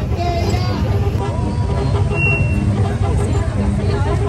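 Quad bike (ATV) engines running at low speed, with people's voices over them. A short high tone sounds about two seconds in.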